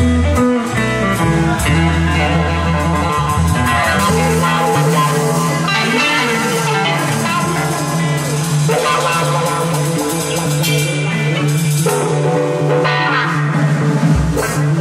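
Live band playing an instrumental passage: two electric guitars, one a Stratocaster-style solid body and one a red semi-hollow, with upright bass and a drum kit. The deep bass notes thin out about four seconds in.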